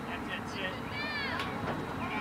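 Distant high-pitched shouts from young players or spectators, with one drawn-out call about a second in that rises and then falls in pitch, over a steady low rumble.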